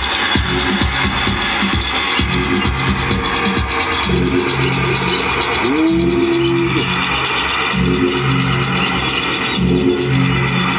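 Loud electronic dance music, drum and bass, mixed live on DJ decks and a mixer, with a heavy bass line throughout. About six seconds in, a synth note slides up and holds for about a second.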